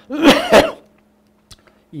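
A man coughing into his fist to clear his throat: one short, harsh burst of about half a second near the start, then quiet apart from a faint click.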